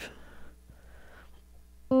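Electric guitar, mostly quiet while the fretting hand shifts up the neck, then near the end a major triad starts to ring, several notes entering one after another: an F chord fretted with the D chord shape at the fifth fret.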